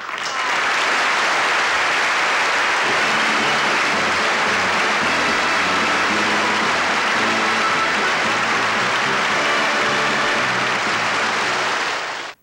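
Large audience applauding, starting suddenly and holding loud and steady. From about two or three seconds in, music plays underneath the clapping.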